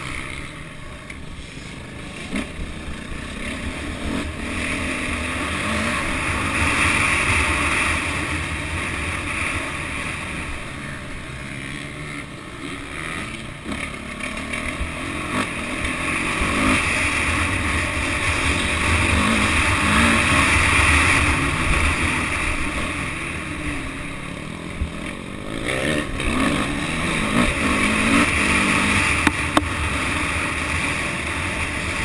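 Radio-controlled camera helicopter in flight, its motor and rotor noise picked up on board together with wind rush; the noise swells and eases as it banks and manoeuvres.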